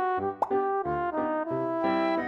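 Instrumental background music, a run of short held notes one after another, with a quick rising plop sound effect about half a second in.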